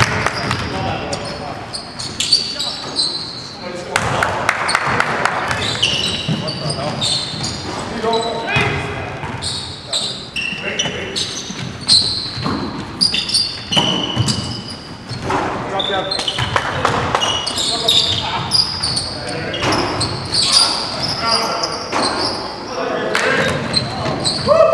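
Live indoor basketball game: a basketball bouncing on a hardwood gym floor, sneakers squeaking in short high chirps, and players' voices calling out, all echoing in a large gym.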